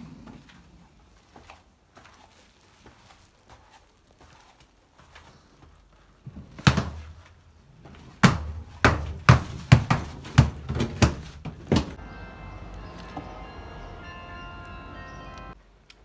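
A run of loud thuds and knocks as luggage is carried down stone stairs, starting about six seconds in and lasting about six seconds. Near the end comes a steady held tone of several pitches.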